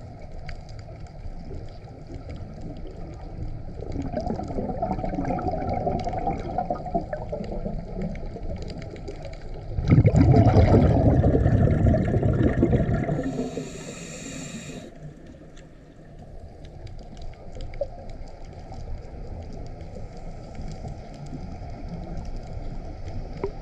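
Underwater sound of a scuba diver breathing through a regulator: gurgling exhaled bubbles, loudest in a burst about ten seconds in, then a short hiss of an inhalation a few seconds later.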